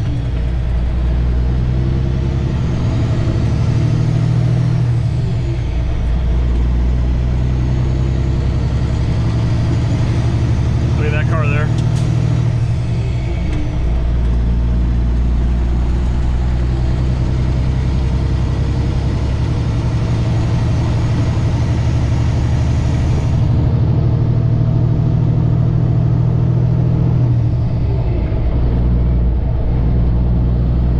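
Diesel engine of a semi-truck heard from inside the cab as the truck pulls back onto the highway and picks up speed. The low engine drone drops and comes back several times as the driver works up through the gears.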